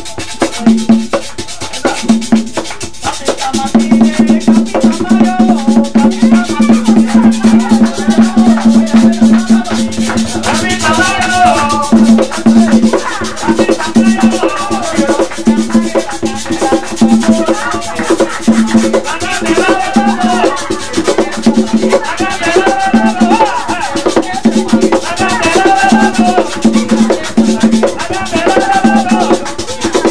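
Son de negro music: a skin-headed hand drum played with bare palms in a fast, steady rhythm, with shaken percussion. Voices start singing from about ten seconds in.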